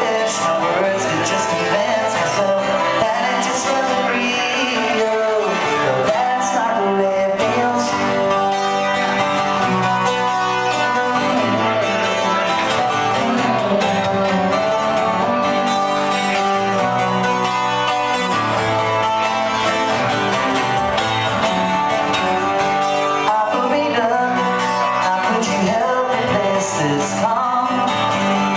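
A man singing a folk ballad live over a twelve-string acoustic guitar.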